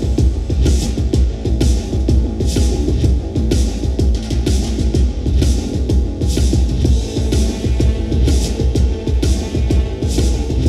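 Instrumental music with a steady drum beat and strong bass, played over Bluetooth through a Gemini GPSS-650 portable PA speaker with a 6.5-inch woofer as a sound demonstration.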